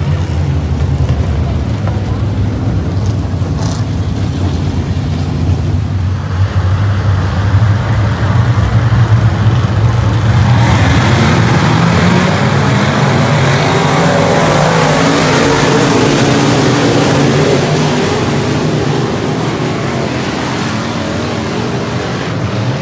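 A field of dirt-track modified race cars running at racing speed, their V8 engines loud throughout. The sound swells as the pack passes close by through the middle and eases again near the end.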